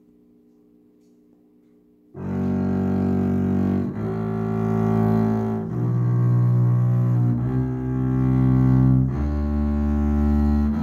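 Double bass played with a bow: a three-octave G major scale in slow, separate sustained notes, each held about a second and a half to two seconds. The playing begins about two seconds in, after a short quiet pause.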